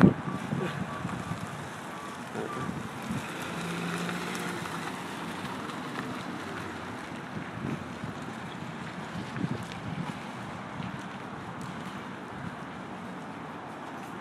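Steady outdoor road-traffic noise with wind buffeting the microphone, and a brief low engine-like hum about four seconds in.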